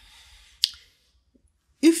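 A single short, sharp click about half a second into a pause in a man's speech, then near silence until his voice resumes near the end.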